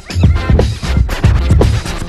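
Recorded turntablist hip hop track: record scratches sweeping up and down in pitch over a bass-heavy beat.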